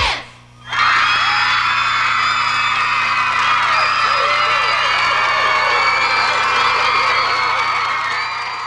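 A studio audience of teenagers cheering, whooping and clapping. It breaks out suddenly about a second in, just after the music stops, and holds as a loud, dense mass of high screaming voices. A steady low hum from the worn VHS recording runs underneath.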